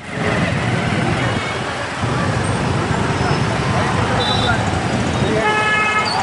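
Congested city-street traffic: the steady din of motorcycle and car engines in a traffic jam, with a vehicle horn honking near the end.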